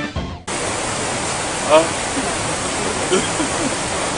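Background music ends in the first half second and gives way abruptly to a steady, even outdoor rushing hiss. A brief faint voice comes through about halfway in.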